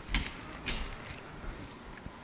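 A door being opened: a faint click of the knob and latch near the start, then soft rustling and steps as someone goes through.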